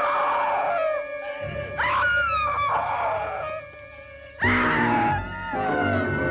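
Dramatic horror film score: swooping, sliding high notes over a held tone, then a sudden loud orchestral stab about four and a half seconds in.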